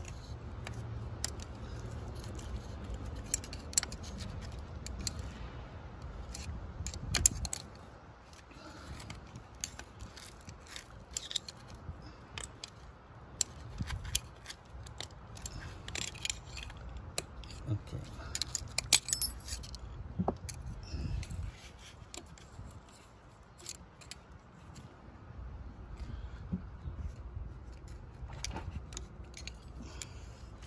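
Scattered small metallic clicks and scrapes of pliers working at a fuel injector's retaining clip on the fuel rail, with a low rumble that drops away about seven seconds in.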